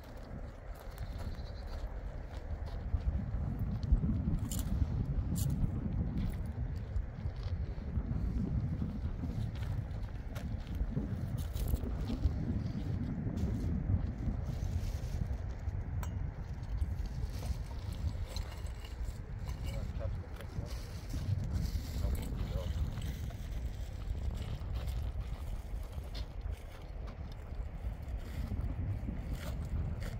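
Wind buffeting the microphone, a low rumble that rises and falls throughout, with a few faint clicks and knocks above it.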